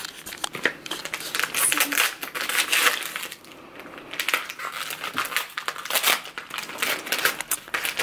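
White paper gift wrap crinkling and tearing as a small wrapped gift is opened by hand, a run of irregular crackles with a brief lull a little past the middle.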